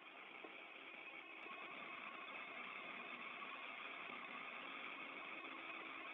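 Faint, steady hiss of an open space-to-ground radio channel between transmissions, growing a little louder over the first couple of seconds, with a faint low hum under it.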